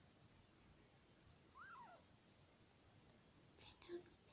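A young kitten gives one short, faint mew that rises and then falls in pitch, about one and a half seconds in. A few soft scratchy clicks follow near the end.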